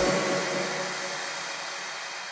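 Dance music cuts off at the start, leaving a steady hiss of white noise, a transition effect between tracks, that slowly fades.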